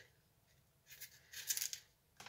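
A kitchen knife cutting into an apple held in the hand: a few short scraping cuts in the second half, after a near-silent first second.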